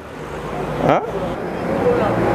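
Road traffic noise, a vehicle passing close and growing louder over the two seconds, with a man's short "hein" about a second in.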